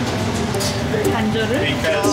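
A woman talking over a steady background noise.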